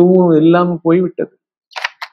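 A man speaking in Tamil: one long drawn-out syllable, then a few short ones, and a brief hiss near the end.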